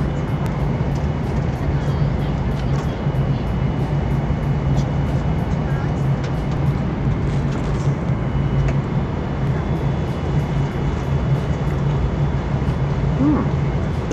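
Steady airliner cabin drone with a low hum, heard in flight. Faint background music with a light regular beat runs under it.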